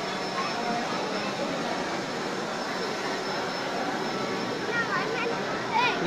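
Crowd chatter: many people talking at once in a hall, a steady babble of overlapping voices, with one nearer voice rising out of it near the end.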